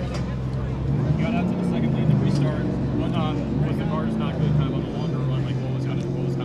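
A low, steady engine hum whose pitch shifts every second or so, under indistinct background voices.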